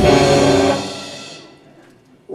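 Live rock band strikes a chord with a drum hit. The chord rings out and fades away over about a second and a half.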